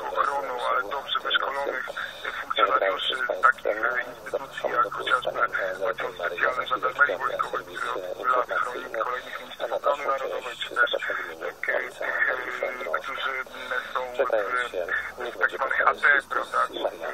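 Continuous talk with a narrow, radio-like sound. The voice is cut off above the mid treble.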